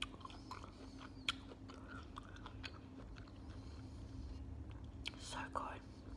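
Close-miked chewing of pineapple chunks: soft wet mouth sounds with a few sharp clicks, and a busier, louder spell of chewing about five seconds in.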